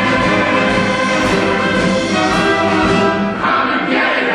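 Orchestral music from a stage musical, with prominent brass over sustained chords. The sound brightens and changes about three and a half seconds in.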